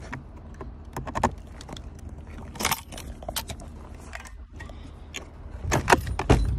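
The side-mounted exterior folding ladder of a Land Rover Defender 110 being unlatched and worked by hand: a series of sharp metallic clicks, clacks and short rattles. A cluster comes about a second in, a longer rattle follows a little later, and the loudest clack comes just before the end.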